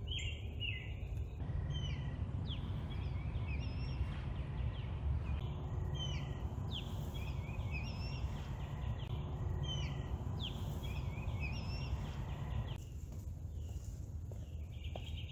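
Outdoor ambience of songbirds chirping over and over, short repeated notes, over a steady low rumble. The background changes abruptly about a second in and again near the end.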